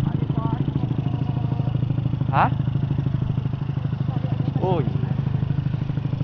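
Honda Astrea Grand's small single-cylinder four-stroke engine running steadily under way, a fast, even exhaust beat at a light cruising throttle.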